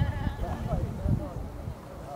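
Voices shouting and calling out across a soccer field during play, over a low rumble.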